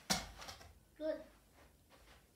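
A thrown tennis ball striking a plastic catch cone and knocking it over: a sharp knock, then a smaller one about half a second later. A short vocal sound follows about a second in.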